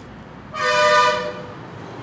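A horn sounds one steady blast lasting about a second, starting about half a second in, with two close pitches heard together.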